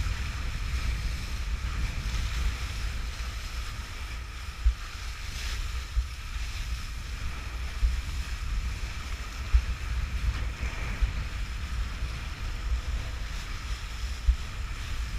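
Kiteboard planing across choppy lake water: steady hiss of spray and chop under heavy wind rumble on the action camera's microphone, with a few sharp thumps as the board hits the chop.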